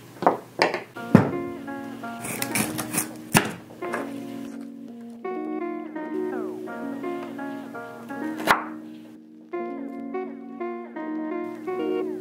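Background guitar-led music with steady notes, with a few sharp knocks or taps over it: several close together at the start, one a little after three seconds, and one past eight seconds.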